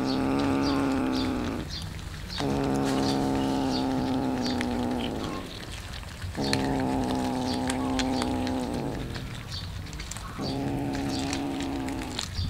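A cat growling over food in long, low drawn-out growls of about three seconds each, one after another with short breaks between. Small wet clicks of cats chewing raw fish run underneath.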